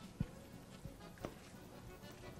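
Metal spoon stirring a wet polvilho dough in a stainless steel bowl: faint, with a few short clicks of the spoon against the steel.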